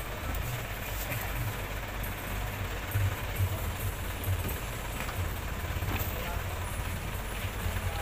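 Outdoor street ambience: an uneven low rumble throughout, with faint background voices and a few light knocks.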